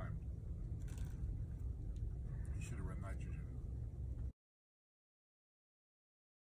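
Faint talking over a steady low rumble, cut off abruptly to dead silence about four seconds in.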